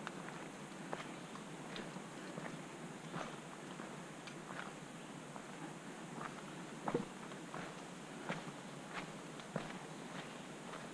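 A hiker's footsteps on a dirt forest trail at a steady walking pace, about one step every two-thirds of a second, with one louder step about seven seconds in.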